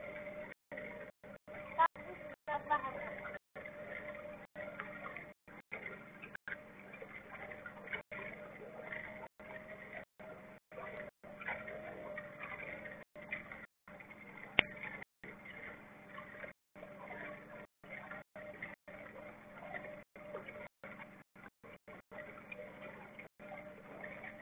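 A small fishing boat's motor running steadily at slow trolling speed, a constant hum with a faint voice here and there and one sharp click in the middle. The sound cuts out briefly many times.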